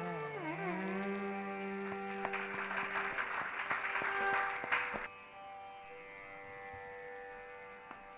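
Carnatic music from a ragam–tanam–pallavi. A melodic phrase dips and rises in a pitch slide in the first second and settles on held notes over a steady drone. From about five seconds in, only the quieter drone remains.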